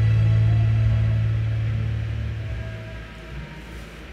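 Karaoke backing track of a ballad ending on a held low note that fades out about three seconds in, leaving faint room noise.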